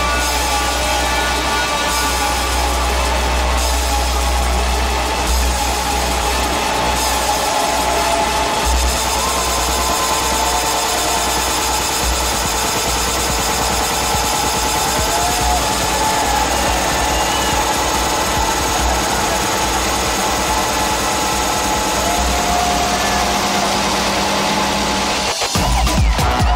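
Electronic dance music from a DJ mix of Lisbon batida: a long, dense, buzzing section with held tones and heavy sub-bass that breaks up about nine seconds in, dropping out briefly just before the beat comes back at the end.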